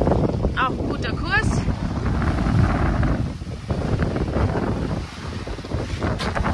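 Strong wind buffeting the microphone aboard a sailing yacht under way, a loud, gusting low rumble with the rush of wind and sea behind it.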